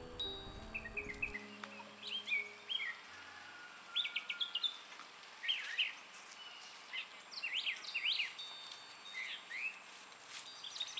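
Soft background music that stops about a second in, then wild songbirds chirping outdoors: short sweeping calls in clusters every second or two.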